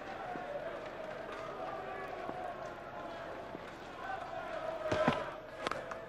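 Cricket ground crowd murmuring steadily, with a few sharp knocks about five seconds in, among them the crack of the bat striking the ball as the batsman pulls a short delivery for six.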